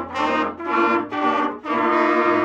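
Children's brass ensemble, mostly trumpets, playing a tune in harmony: three short detached notes, then a long held note starting near the end.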